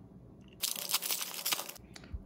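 Trading cards rubbing and sliding against each other in the hand as the top card is moved to the back of the stack: a scratchy crackle lasting about a second.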